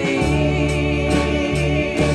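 Contemporary worship song: voices singing a long held note over a steady bass and band.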